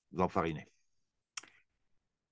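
A brief two-syllable vocal sound from a man, then a single sharp computer mouse click about a second later.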